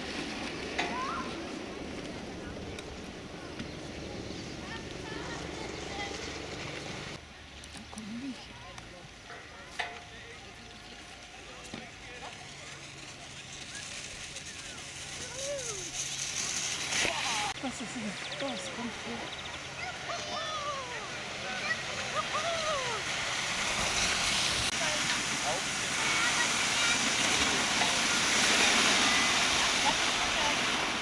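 Sleds sliding over packed snow: a hissing scrape that grows louder through the second half as a sled comes close. People's voices call out in between.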